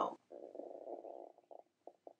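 A person's stomach gurgling, blamed on coffee: a low rumble lasting about a second, then a few short gurgles near the end.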